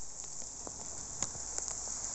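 Rain falling steadily: an even hiss with scattered ticks of drops.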